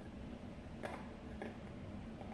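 Two light ticks about half a second apart, a metal spoon tapping as cayenne pepper is spooned into a stockpot, over quiet kitchen room tone.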